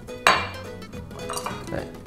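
A glass bowl clinking and rattling as a hand reaches in and draws out a folded paper slip, with a sharp clink about a quarter second in and lighter knocks after it. Soft background music plays underneath.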